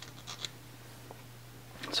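Quiet room tone with a steady low hum, and a few faint light scratches in the first half-second.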